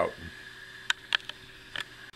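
A quiet room with a steady low hum and a few small, sharp clicks and taps, a cluster about a second in and another near the end, just after the last word of speech.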